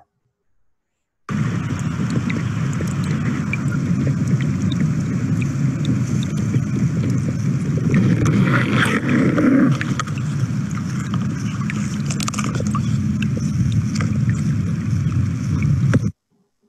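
Shallow stream water flowing and rippling over rocks: a steady watery noise that starts suddenly just over a second in and stops abruptly at the end, with a louder patch about halfway through.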